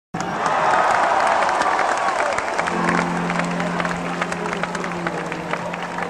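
Concert audience applauding and cheering. About two and a half seconds in, the band comes in underneath with a steady held low note.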